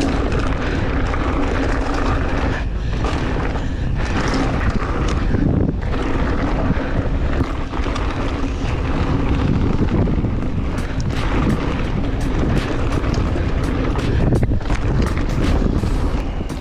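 Wind rushing over an action-camera microphone as a mountain bike descends a loose gravel and dirt trail, with tyres rolling over the stones and the bike clicking and rattling over bumps.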